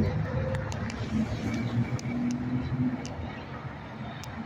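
Steady road-traffic rumble with a car approaching along the road.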